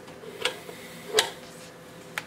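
Two light clicks about three-quarters of a second apart as the banana plugs of multimeter test leads are pulled out of a bench power supply's binding posts, over a faint steady hum.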